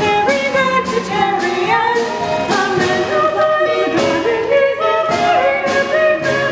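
Two women singing an upbeat musical-theatre duet with instrumental accompaniment.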